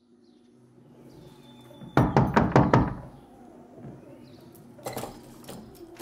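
A rapid run of about five loud knocks in under a second, followed a few seconds later by a single fainter knock, over low room ambience.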